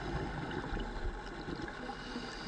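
Steady underwater ambience: an even low hiss and rumble of the water, with no distinct bubbles or strokes.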